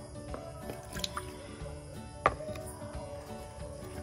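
Soft background music, with a single sharp drip of water about halfway through as water is let out of a clear plastic cup.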